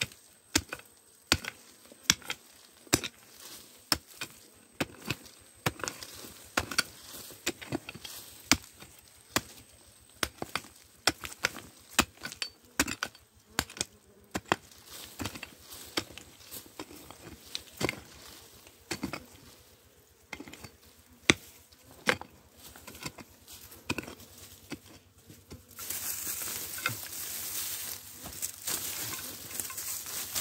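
Hand hoe chopping repeatedly into dry, stony soil, a strike about once a second, each with a crunch of loosened dirt and pebbles. A louder, steady hiss takes over for the last few seconds.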